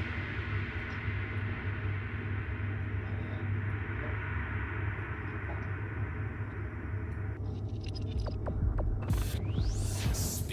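A steady low hum with a hiss over it. The hiss drops away about seven seconds in, a few faint clicks follow, and a short loud rushing noise comes near the end.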